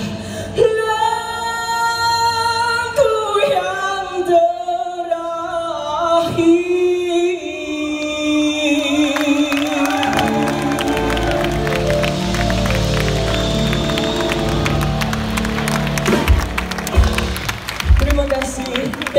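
Live pop band with a male lead singer: held sung notes over sustained chords, then drums and the full band come in about halfway and build to a few accented closing hits near the end.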